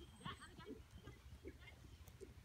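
Faint, soft hoofbeats of a horse moving over a soft arena surface.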